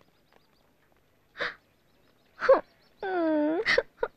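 A woman's short sharp gasps, then a drawn-out, wavering frightened cry about three seconds in, followed by one more gasp.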